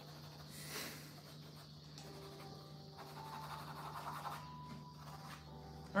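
Faint background music over a steady low hum, with the light scratch of a fountain pen nib on notebook paper.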